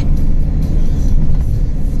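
Cargo van driving at motorway speed, heard from inside the cab: a steady, low rumble of engine and tyre noise.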